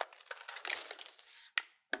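A tray of bullets tipped out of a plastic tray into a cloth polishing bag: the cloth rustles as the bullets slide in, and two sharp clicks come near the end.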